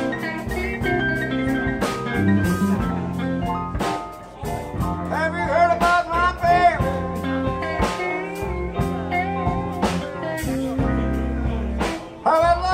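Live blues band playing: electric guitars over drums, with a lead line of bent, sliding notes.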